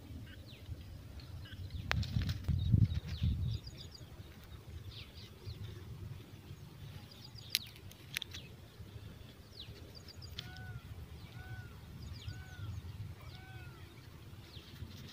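Birds chirping in short, high, downward-sweeping notes over a low rumble that is loudest a couple of seconds in. Near the end, a lower call with an arched pitch repeats four times, about a second apart.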